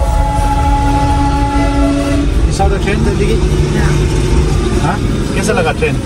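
Inside a moving car's cabin, a horn gives a steady held note for about the first two seconds over the low rumble of engine and road, then voices take over.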